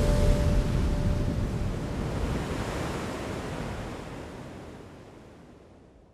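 Ocean surf, a steady rush of breaking waves, fading out slowly to silence. A held music chord ends about half a second in.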